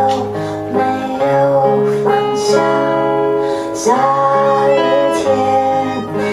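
A woman singing a song live over strummed guitar accompaniment.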